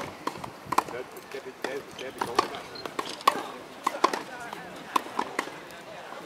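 Tennis rackets striking balls, with the balls bouncing on the grass court: a string of sharp pops of varying loudness, about one to two a second.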